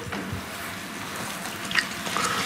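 Steady hiss of room noise picked up by the pulpit microphone, with one faint brief rustle near the end.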